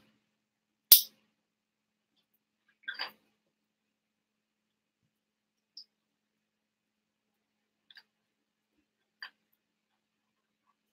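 Plastic LEGO pieces being handled: one sharp click about a second in, then a brief faint rattle and a few faint small clicks.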